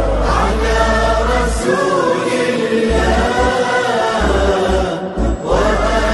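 Outro music: a chanted vocal piece, voices singing a melody, with a short break about five seconds in.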